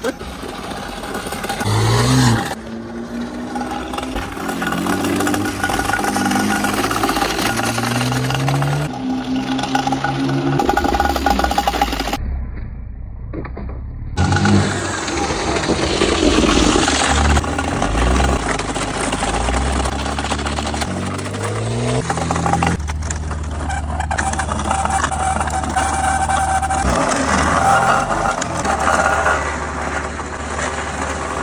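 A BMW's engine and exhaust revving and accelerating, the pitch climbing and dropping back again and again as it pulls through the gears, with a short break near the middle. In the last third it holds a steadier running tone.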